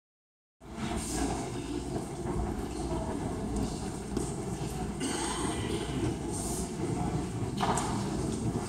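Indistinct murmur of voices in a large hall, over a steady low rumble, starting abruptly about half a second in.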